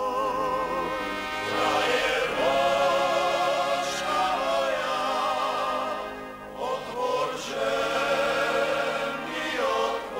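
Voices singing a folk song together, in phrases of wavering, vibrato-laden notes with short breaks between them.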